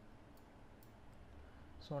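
Two faint computer mouse clicks, less than half a second apart, over low room noise.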